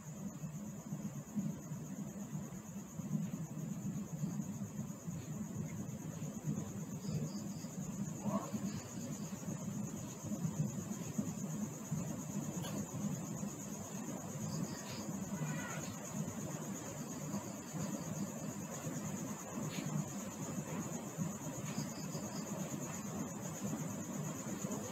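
Low-level steady background noise: a low hum with a constant high-pitched whine over it, and a few faint scattered clicks.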